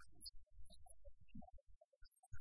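Near silence: a faint, uneven low hum.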